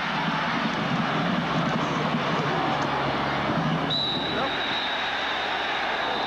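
Large stadium crowd cheering loudly and steadily through a kickoff return. About four seconds in, a long, steady, high-pitched referee's whistle starts and holds, blowing the play dead.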